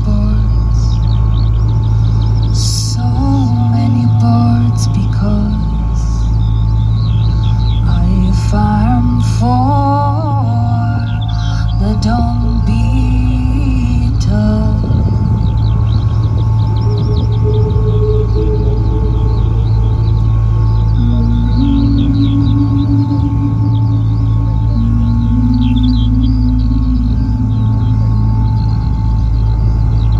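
Ambient sound-art music: a steady low electronic drone, with a woman's wordless vocal lines that step and slide in pitch. Scattered high clicking and chirping textures run through it, made from recordings of soil creatures.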